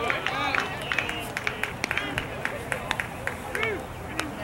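A small crowd of spectators clapping and shouting: scattered sharp claps and short raised voices, which build right at the start and thin out toward the end.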